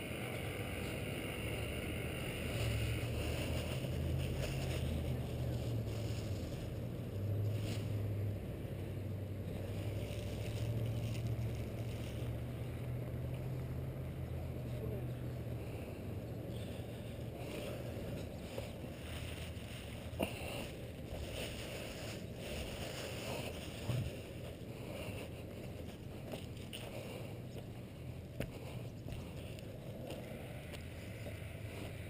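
Low steady rumble of handling and wind noise on a body-worn GoPro Hero 2 as the wearer walks, with a few faint knocks.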